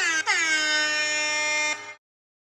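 A horn-like electronic sound effect: a couple of quick falling chirps, then a tone that slides down in pitch and holds steady for over a second before cutting off abruptly near the end.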